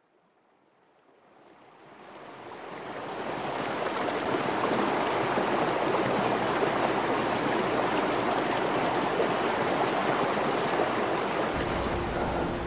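A rocky stream rushing and splashing over a small cascade, fading in over the first few seconds and then steady.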